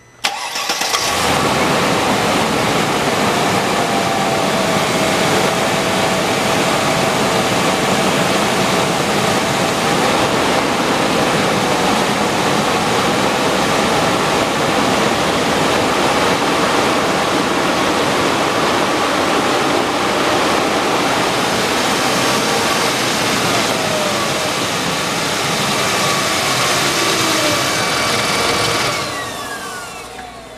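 Mercedes ML320's 3.2-litre V6 cranking and catching at once, then running steadily. The sound falls away just before the end.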